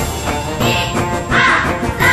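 Background music with a steady beat, with three short animal calls over it: one about half a second in, one about a second and a half in, and one at the very end.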